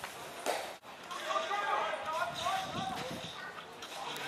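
Several voices calling out on a football field, with a sharp thump about half a second in.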